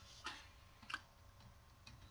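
Near silence with a few faint ticks of a stylus tapping and writing on a tablet screen, the clearest about a second in.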